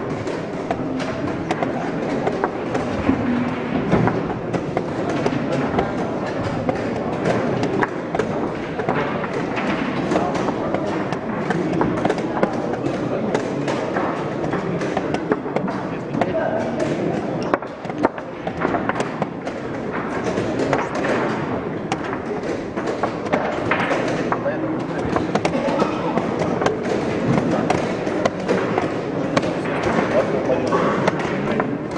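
Chess pieces being set down and a chess clock being tapped in a fast game: a run of short knocks and clicks over indistinct voices in the room.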